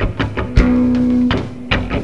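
Rock band playing live: electric guitars and bass guitar over a drum kit with regular drum hits. About half a second in, a low note is held for under a second.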